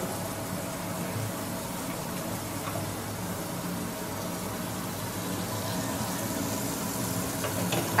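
Kitchen faucet running steadily into a stainless-steel sink.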